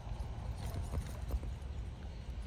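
A Weimaraner's paws thudding on a grass lawn as it runs close past, a quick run of soft footfalls over a low rumble.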